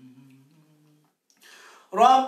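A man's voice humming softly on one low, steady note for about a second. Near the end comes a short breath drawn in, in the pause between passages of Quran recitation.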